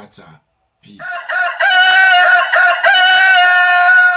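Rooster crowing: one long, drawn-out crow starting about a second in.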